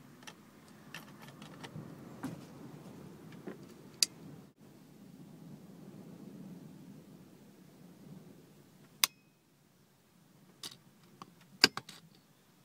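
Sharp clicks of a fibre-optic cleaver and its fibre-holder clamps being worked by hand, over faint handling noise. There is a single click about four seconds in, another about nine seconds in, and a quick cluster of clicks near the end.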